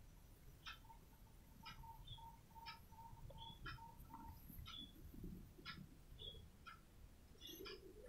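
Near silence, with faint short chirps recurring about once a second and a soft, rapidly repeating note in the first half.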